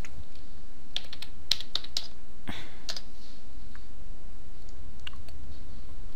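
Computer keyboard keys clicking in a quick irregular cluster between about one and three seconds in, with a few fainter clicks near five seconds, over a steady low hum.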